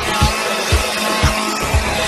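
Background music with a steady beat, about two thumps a second, under the loud racing noise of a running chainsaw engine.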